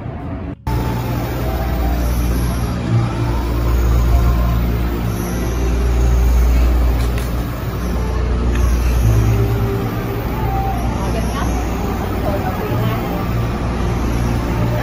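Street traffic: a steady low engine rumble that swells and eases over several seconds, starting abruptly about half a second in, with indistinct voices in the background.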